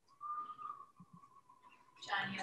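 A faint, steady whistle-like tone held for nearly two seconds, dipping slightly in pitch about half a second in, with a couple of soft knocks partway through.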